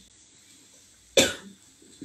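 A single short cough a little over a second in, in an otherwise quiet room.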